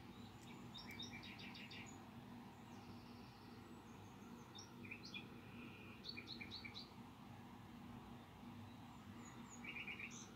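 Faint bird chirping: a few short runs of quick, high, repeated notes, over a low steady hum.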